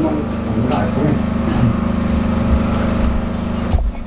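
Steady low hum with faint speech in the room. About four seconds in, a bump and a brief dropout as the handheld microphone is passed from hand to hand.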